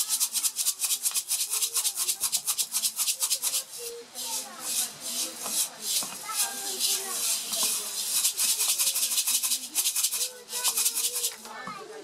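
Mung bean seeds rattling inside a lidded clay pot shaken hard and fast, in rapid strokes with short breaks about four seconds in and near the end. The pot is being shaken to coat the soaked seeds with Bavistin fungicide powder, a seed-treatment step before sowing.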